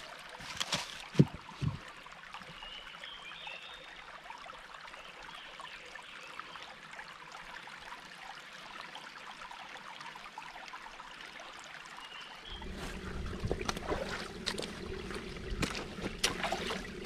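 Small woodland stream trickling over rocks, with a few sharp knocks in the first seconds. About three quarters of the way in, the water becomes louder and fuller, and footsteps on the stream stones come in.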